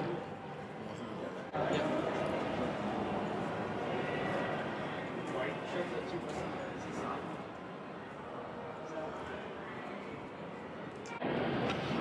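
Indoor shop room noise: a steady hiss with faint, indistinct voices in the background.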